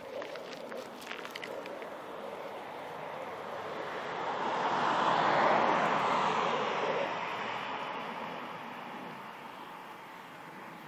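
Fighter jet flying over, its jet noise swelling to a peak about five seconds in and then fading away as it passes.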